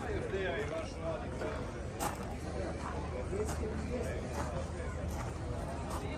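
People talking in the background, their voices unclear, over a steady low hum.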